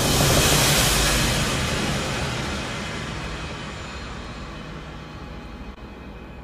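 Cinematic trailer sound effect: a loud rushing swell peaking just after the start, then slowly fading over several seconds with a low rumble underneath.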